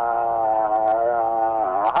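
A man's long, drawn-out hesitation sound 'aah', held on one steady pitch for about two seconds and dipping briefly near the end, heard over a telephone line.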